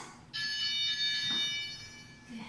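A long, steady electronic beep, high-pitched with evenly stacked overtones, starting about a third of a second in and lasting nearly two seconds. It is a workout interval timer's signal marking the switch between the work and rest periods.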